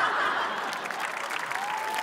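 Studio audience applauding, an even wash of clapping that eases off slightly, with a thin steady tone coming in near the end.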